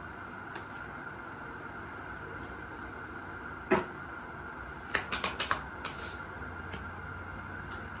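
A deck of tarot cards being handled and shuffled by hand: a single card tap about four seconds in, then a quick run of card clicks about a second later, over steady background hiss.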